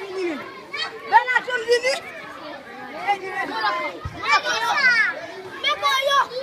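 A crowd of schoolchildren playing, many young voices talking and calling out over one another.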